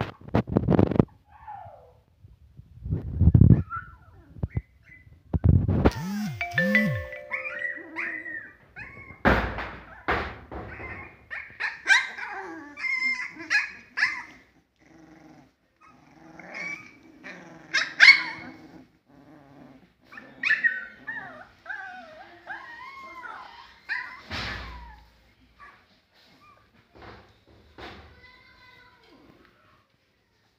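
Three-week-old husky puppies yipping, whimpering and squealing in short, thin, high cries as they wrestle together. Several loud thumps come in the first six seconds and another near the end.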